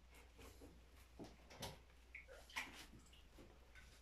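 Near silence: a few faint soft taps and dabs from a silicone pastry brush spreading honey over a stack of crepes, over a low steady hum.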